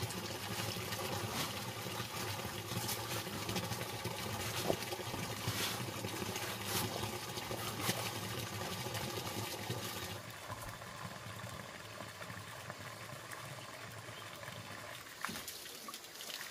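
Water running and splashing: water from a hose and water scooped from a basin splash onto a wooden plank floor, with several sharper splashes through the first ten seconds, then a softer, steady trickle.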